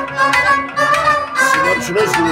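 Instrumental passage of Kashmiri Sufi music: a bowed string instrument plays a melody over regular strokes on a clay-pot drum (noot).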